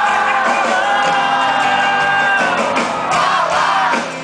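Live band music through a concert PA: a man singing over acoustic guitar and drums, a long note held for roughly the first two and a half seconds, with a crowd shouting along.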